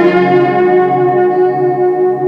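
Instrumental music: a sustained chord ringing and slowly fading, with no vocals.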